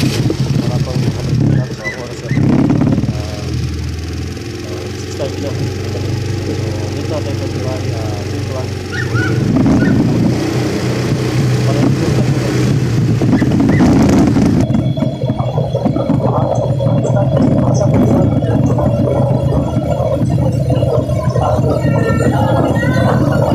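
Motorcycle engine running steadily with road and wind noise, with a muffled voice over it.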